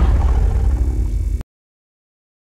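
Deep, loud rumble of a cinematic logo-reveal sound effect, cutting off suddenly about a second and a half in.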